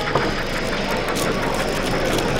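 009 narrow-gauge model locomotive running along the track, a steady motor hum with scattered light clicks from the wheels, heard against the background noise of an exhibition hall.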